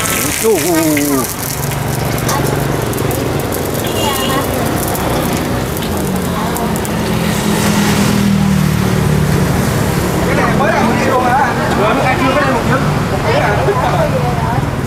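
Street traffic: a vehicle engine's low hum that swells in the middle, with indistinct voices near the start and near the end.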